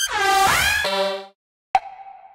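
Synth lead one-shot samples previewed one after another, all repitched to G. The first is a dense, buzzy note that dips and swoops up in pitch, then drops in steps and stops after about a second. The second is a short plucky note that starts near the end and fades out.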